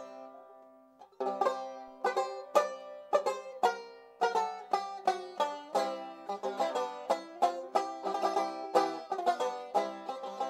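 Banjo playing the instrumental opening of a song: a chord rings out and fades, then from about a second in comes a steady run of plucked notes, several a second.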